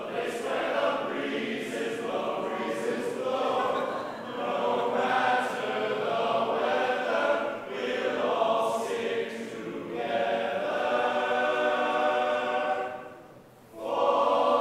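All-male a cappella group singing unaccompanied in harmony, in sung phrases, breaking off briefly near the end before the next phrase.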